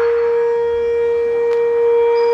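One long steady note held on a horn-like wind instrument in the recorded dance music, without drums or a beat.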